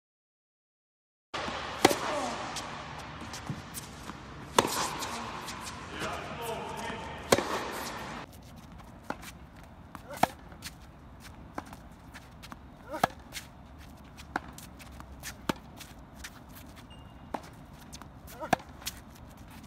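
Tennis ball being hit back and forth with rackets: sharp single pops at roughly one to one and a half second intervals, with voices in the background over the first several seconds.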